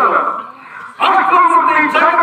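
A man's loud, drawn-out stage vocal in a folk-theatre performance ends in a sharp downward slide. After a short lull, a new loud pitched vocal phrase starts abruptly about a second in.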